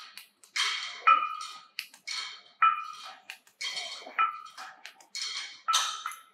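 Cable machine's steel weight stack and cable hardware clanking and ringing in a steady rhythm with each repetition of a reverse fly: a pair of metal clinks about every second and a half, the second one ringing briefly, four times.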